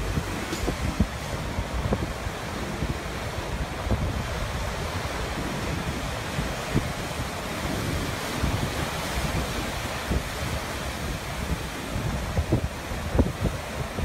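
Ocean surf breaking and washing over rocks, a steady rushing with gusts of wind rumbling on the microphone. It cuts off suddenly at the end.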